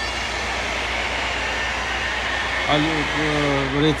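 Steady machinery noise with a low hum inside a tunnel under construction, even and unchanging, with no single knocks or strikes.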